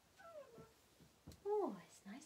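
Domestic cat meowing twice: a short meow falling in pitch, then a louder, longer one that rises briefly and drops low near the end.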